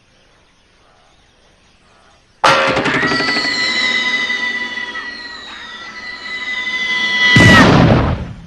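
Cartoon sound effects over the score: after a quiet start, a sudden loud musical entry about two and a half seconds in carries a long falling whistle while a character flies through the air, ending in a loud crash near the end.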